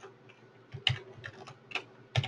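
A few sharp computer-keyboard keystrokes, irregularly spaced, starting a little under a second in, over a faint steady hum.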